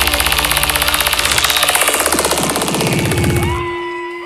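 Live industrial electronic music: a fast pulsing synthesizer rhythm that drops out near the end, leaving a single held synth tone and a few gliding higher tones that fade away.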